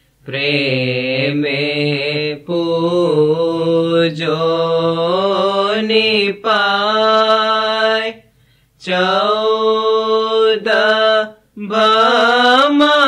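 A solo voice singing an Ismaili ginan, a Gujarati devotional hymn, in a slow chant-like melody of long held, gliding notes with short breaks for breath.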